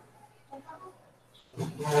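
A quiet stretch with faint murmurs, then about one and a half seconds in a sudden loud, drawn-out shout of "yeah" in a rough, growling voice.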